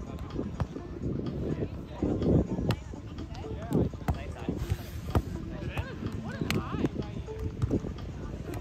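Wind buffeting the microphone on the sand court, with a few sharp slaps of the volleyball being struck and players' indistinct calls.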